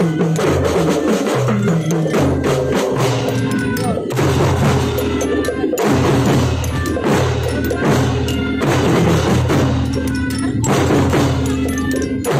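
A children's marching drum band playing: snare drums and bass drums beating a fast, dense rhythm with hand-cymbal crashes. Sustained melodic notes sound over the drums.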